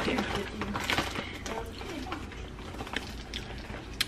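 A person chewing a soft-baked cookie: faint, scattered mouth clicks and smacks over a low steady hum.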